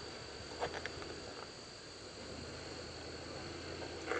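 A steady high insect drone, typical of crickets in summer grass, over the low, steady rumble of a pickup truck crawling at low speed, with a couple of short knocks about half a second and a second and a half in.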